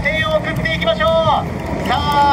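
High-pitched raised voices calling out over a steady low rumble.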